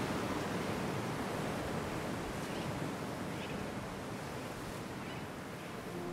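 Steady wind and sea surf breaking on a rocky coast, an even rushing noise that fades slightly toward the end.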